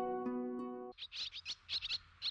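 The last notes of the gentle background music fading out, then about a second in, a quick run of short high bird chirps, several a second: cartoon twittering for a flock of swallows flying in.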